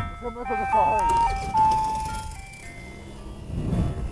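A simple electronic jingle of single beeping notes stepping up and down in pitch, played by a small music device on a motorbike. A small engine revs faintly near the end.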